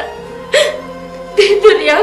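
A person crying in short sobbing vocal cries, one about half a second in and a longer run in the second half, over background music with sustained tones.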